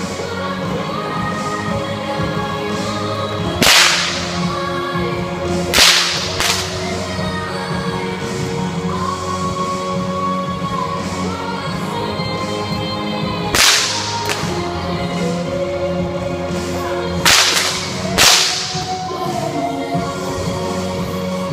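Six-foot bullwhip cracking: five loud, sharp cracks spaced unevenly, with a fainter crack just after the second, each ringing briefly in the hall.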